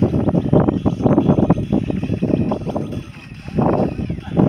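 Wind buffeting the phone's microphone, a loud uneven low rumble in gusts, easing briefly about three seconds in.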